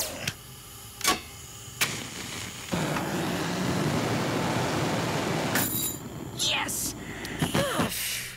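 Two sharp clicks, then a cutting torch hissing steadily for about three seconds as it cuts through a steel handcuff chain. The hiss starts near three seconds in and stops abruptly.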